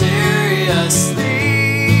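Acoustic guitar strummed in a steady rhythm while a man sings along without clear words, holding a long wavering note near the end.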